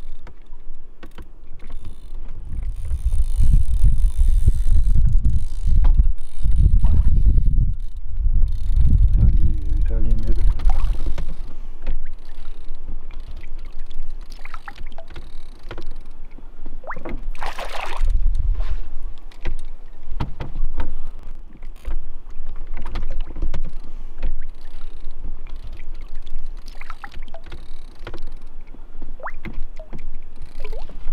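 A small rowing boat on a lake while a trout is played and netted: water splashing and slapping at the hull and oar, with knocks against the boat and deep rumble on the microphone, heaviest in the first ten seconds. A sharper splash comes a little past the middle.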